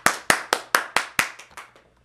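One person clapping their hands, a quick even run of about four claps a second that gets weaker and stops near the end.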